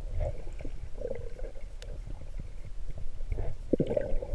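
Underwater sound heard through a GoPro's waterproof housing: a steady low, muffled rumble of moving water, with short gurgles scattered through it and a faint click about halfway.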